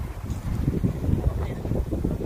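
Wind buffeting a phone's microphone: a low, uneven rumble in gusts.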